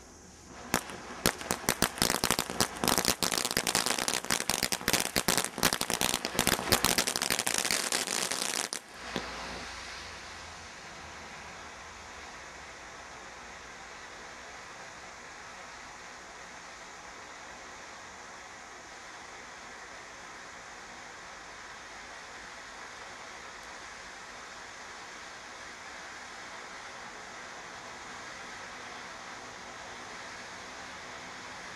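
Brothers Pyrotechnics 'Glow Worm Party' firework fountain crackling in a rapid, dense stream of pops for about eight seconds. The crackling stops abruptly, and a steady hiss goes on as the fountain keeps spraying sparks.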